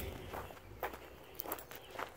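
Faint footsteps on gravel, with a couple of soft steps standing out about a second in and again near a second and a half.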